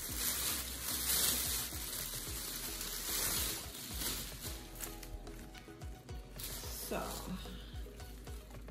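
Thin plastic shopping bags rustling and crinkling as hands dig through them and pull out floral stems, loudest in the first half, over soft background music.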